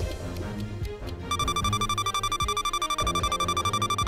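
Background music under a quiz countdown. About a second in, an electronic alarm-clock-style ring starts, a fast-pulsing high tone that runs until the timer reaches zero and signals that time is up.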